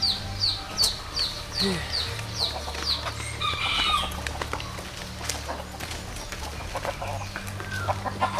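Chickens calling: a run of short, high chirps, each falling in pitch, about three a second, that thins out after about three seconds, over a steady low hum.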